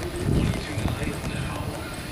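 A ridden filly's hooves thudding on the soft dirt footing of an arena in an uneven running rhythm, the heaviest beats about half a second in. Radio talk plays in the background.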